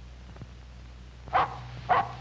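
A dog barks twice in quick succession, over the steady low hum of an old 16mm film soundtrack.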